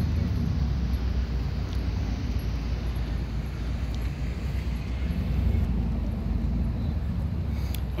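Steady low rumble of wind buffeting a phone's microphone outdoors, with a fainter hiss above it.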